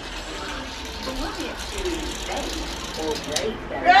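Faint, indistinct voices murmuring over a steady noisy haze, with a loud shout of "Yeah!" right at the end.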